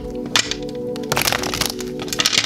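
A tarot deck being shuffled by hand: sharp card clicks, thickening into a dense rattle of cards a little after a second in, over background music with steady sustained tones.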